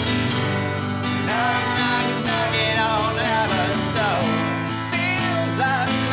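Acoustic guitar strumming, with a wordless sung melody rising and falling over it from about a second in.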